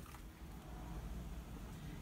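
Faint, steady soft bubbling of a large stockpot of strawberry jam mixture that has just come to the boil.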